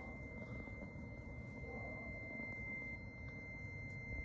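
Quiet background noise: a low, even rumble with a faint steady high-pitched tone.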